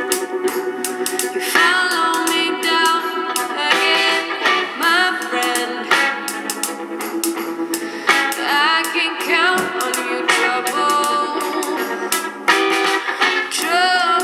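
A song with singing and guitar played through a homemade inverted electrostatic speaker panel, fed from a phone by a small class D amplifier. It sounds thin, with almost no bass, and a bit shouty.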